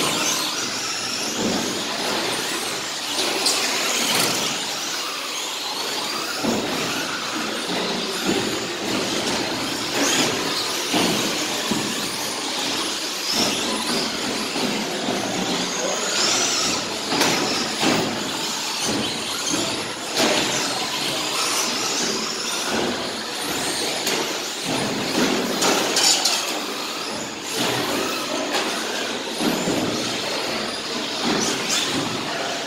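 Radio-controlled 2wd short course trucks racing on a polished concrete floor: electric motors whining and tyres squealing. A few sharp knocks stand out, about four seconds in and again near ten, seventeen and twenty-six seconds.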